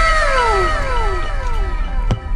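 An edited-in 'wow' reaction sound effect: several overlapping tones that each slide down in pitch over about a second, one after another, fading out near the end.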